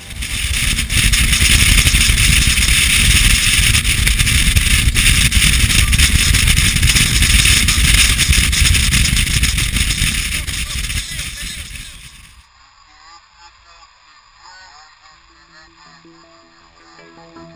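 Rigid inflatable boat running at speed, heard as loud wind rush over the microphone with engine and water noise underneath. The sound cuts off suddenly near the end, leaving only faint sound.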